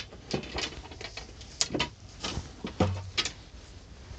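Hickory-shafted golf irons knocking and clinking against one another as one is lifted out of the set: a series of light, irregular knocks with some rustling handling noise.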